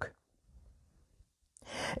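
Near silence, then a man's audible in-breath rising near the end, just before he speaks.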